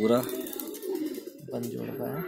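Domestic pigeons cooing: several low, wavering coos.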